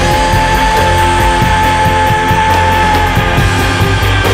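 A rock band playing live, with drums and synthesizer keyboards. One long note is held over the band for about the first three seconds.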